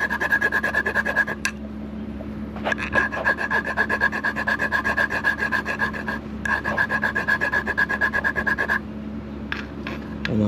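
Hand file worked back and forth across a painted alloy wheel spoke in a fast rasping rhythm with a steady high ring. It is taking down paint that bubbled up where the wheel was welded. The filing stops for about a second, about a second and a half in, then pauses again near the end.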